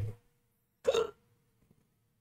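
One short, breathy vocal sound from the man about a second in, between stretches of near silence.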